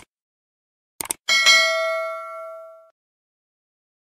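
Subscribe-button sound effect: a mouse click at the start and a quick double click about a second in, followed by a bright notification-bell ding that rings out and fades over about a second and a half.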